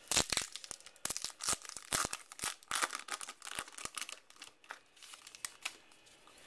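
Paper wrapper of a 2012 Topps Heritage baseball card pack being torn open and crinkled by hand: a dense run of sharp crackles and rips that thins out over the last couple of seconds.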